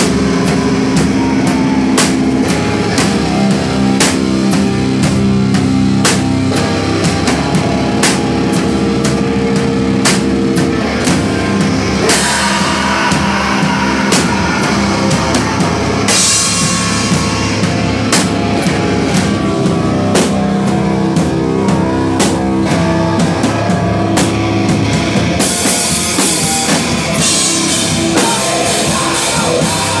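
Hardcore rock band playing live and loud, with no vocals. A drum kit beats steadily under sustained, amplified guitar and bass chords. The cymbals thicken into a crashing wash about twelve seconds in and again over the last few seconds.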